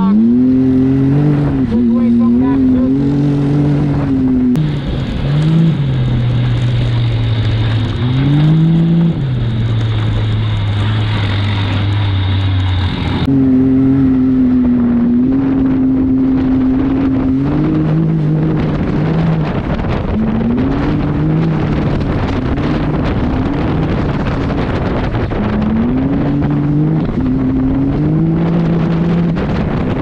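Can-Am Maverick X3's turbocharged three-cylinder engine heard from the cab while driving a dirt trail, its pitch rising and falling again and again as the throttle is worked. From about 4 to 13 seconds in it holds a steady, lower pitch with a faint high whine over it, over a constant rush of tyre and chassis noise.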